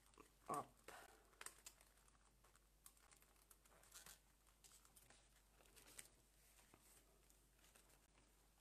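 Faint rustling and a few light clicks of paper pages being handled on a tabletop.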